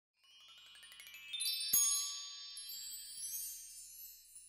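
Shimmering chime sting: a quick run of bell-like tinkles rising in pitch, a bright strike about a second and three quarters in, then a sparkling ring that fades away.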